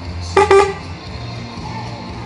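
Two short horn toots in quick succession, about a third of a second in, over music playing throughout.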